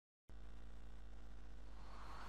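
Faint, steady low hum starting about a quarter second in, after dead silence.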